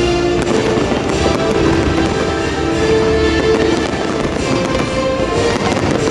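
Fireworks bursting in quick succession, many sharp bangs, over loud show music.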